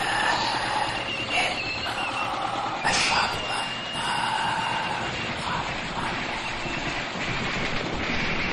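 Several car horns sounding in long, overlapping blasts at different pitches over the noise of slowly passing cars.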